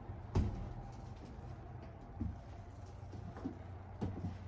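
Footsteps on wooden deck boards: slow, dull thuds about every two seconds over a low steady hum.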